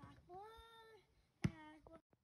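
A child's voice making two short wordless sounds, the first drawn out and rising then falling in pitch, the second following a sharp knock about a second and a half in.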